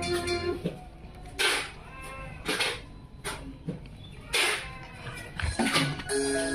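Music played through a power amplifier and loudspeaker cuts off about half a second in. A new track then starts with a sparse intro of short, echoing sounds about once a second, and fuller music comes back right at the end.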